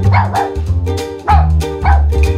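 Upbeat plucked-string intro music with a small dog barking a few short times over it.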